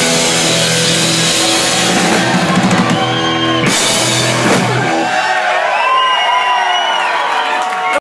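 Live punk rock band with electric guitars, bass and drums playing out the end of a song, with a cymbal crash about four seconds in. About five seconds in the drums and bass drop out, leaving ringing electric guitar notes that bend in pitch.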